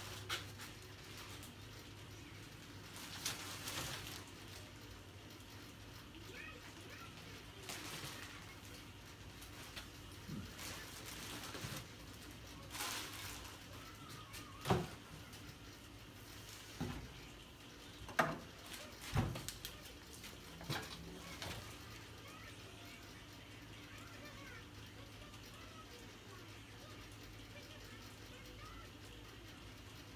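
Plastic wrapping and a cardboard box rustling as aluminum cylinder heads are unpacked and handled, with several sharp knocks and clunks from the metal parts in the middle stretch. A low steady hum runs underneath.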